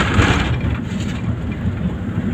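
Cabin noise of a vehicle driving on a rough unpaved road: a steady low rumble of engine and tyres, with a brief hissing rush in the first half second.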